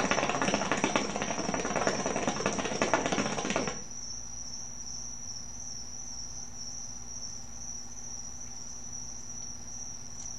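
Hookah water bubbling hard as smoke is drawn through the hose for about four seconds, then stopping. A steady high-pitched insect trill continues behind it.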